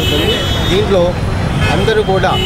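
A man talking into reporters' microphones, over a steady rumble of road traffic.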